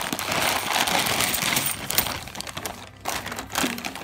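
Clear plastic bags of 50p coins crinkling, with coins clinking inside, as the bags are handled and tipped out. The rustling is dense for the first two and a half seconds, then turns to a few scattered clicks.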